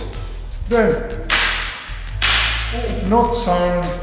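Short shouted calls from jukendo practitioners. Between them come two long hissing rushes of sound, a little past one second and just after two seconds.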